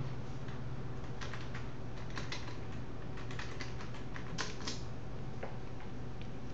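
Irregular, scattered clicks of keys on a computer keyboard, a few at a time, over a steady low hum.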